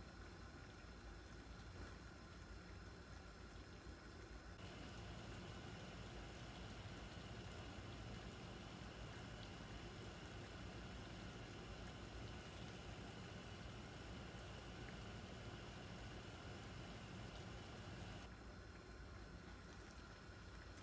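Pot of water at a steady boil on a stovetop, heard as faint, steady bubbling. A faint steady high tone comes in about four seconds in and stops a couple of seconds before the end.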